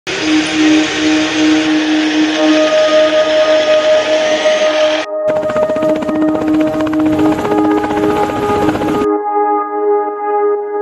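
Background music of long held notes laid over sound from the footage: steady vehicle noise for the first five seconds, then the fast beating of a coaxial-rotor attack helicopter's blades. About nine seconds in the footage sound cuts off and the music goes on alone.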